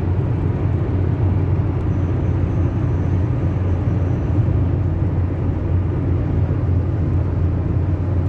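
Steady road and engine rumble heard inside a car's cabin while driving along a highway.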